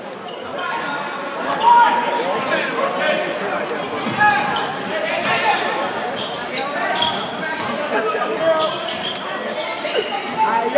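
Basketball being dribbled on a hardwood gym floor during live play, with spectators' voices and calls echoing in the gym.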